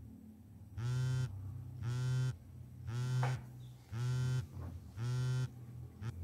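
A mobile phone on vibrate buzzing in five even pulses, each about half a second long and about a second apart: an incoming call.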